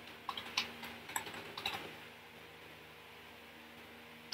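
Typing on a computer keyboard: several quick key clicks in the first two seconds, then only a faint steady hum.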